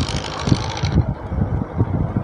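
A motorcycle on the move, heard as wind buffeting the camera microphone over low engine and road rumble; the hiss thins out about halfway through.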